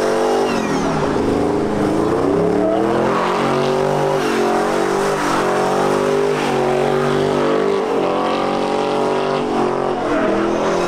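Engine of a caged Jeep doing a burnout, held at high revs, its pitch wavering up and down as the throttle is worked while the rear tyres spin in heavy smoke.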